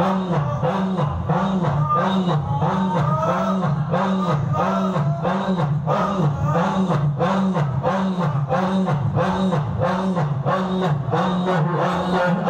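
A congregation of men chanting zikir in unison, repeating "Allah" in a steady rhythm of about three chants every two seconds.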